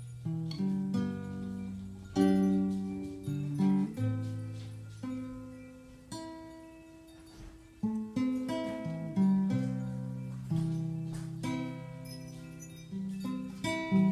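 Solo acoustic guitar played without singing: chords struck a stroke at a time and left to ring out and fade, with a softer stretch about six to eight seconds in.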